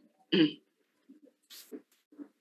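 A man clears his throat once, briefly, about a third of a second in, followed by a few faint small sounds.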